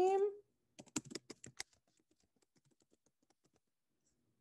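Typing on a computer keyboard: a quick run of clear keystrokes about a second in, then a longer run of fainter, rapid taps that stops shortly before the end.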